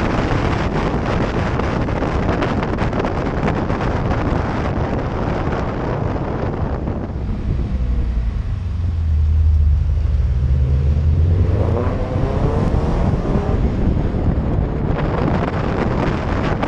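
Wind buffeting a car-mounted microphone while driving. About halfway through, as the car slows for a hairpin, the wind noise drops away and a car engine's low drone comes through, rising slightly in pitch as the car pulls out of the bend, before the wind noise returns.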